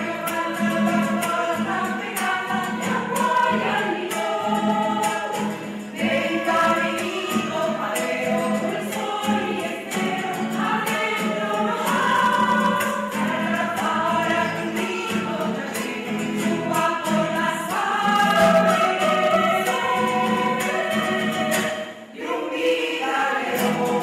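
A choir singing, with several voices holding sustained notes together. There is a brief break near the end before the singing resumes.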